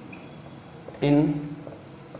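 A steady high-pitched tone holds at one pitch throughout, with a single spoken word about a second in.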